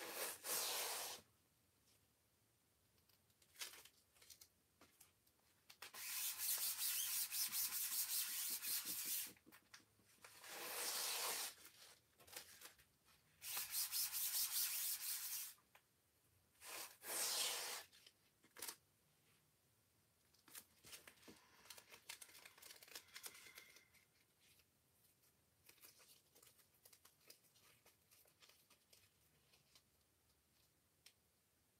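A sticky stencil transfer being pressed onto a fabric fuzzing mat and peeled off again, about five raspy ripping peels of one to three seconds each. This fuzzing lowers the stencil's tack so it won't pull up the chalk paste already on the sign. After that come only faint light taps and rustles as the sheet is handled.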